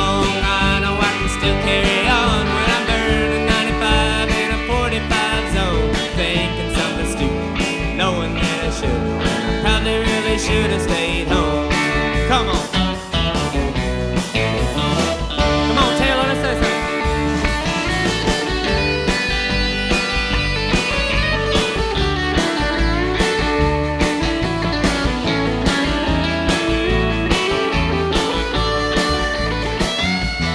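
Live country-rock band playing an instrumental break: electric guitar leading over a steady drum beat and bass, with sliding, bending guitar notes.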